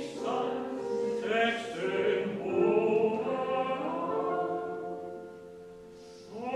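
Tenor voice singing with piano accompaniment; the singing dies away near the end.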